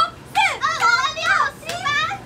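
Young women's excited, high-pitched voices, lively and without clear words.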